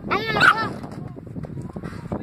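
A dog barking, a few quick high-pitched barks in the first half-second.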